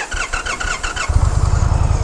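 Indian Challenger's liquid-cooled V-twin being started: about a second of rhythmic starter cranking, then the engine catches and settles into a steady low idle.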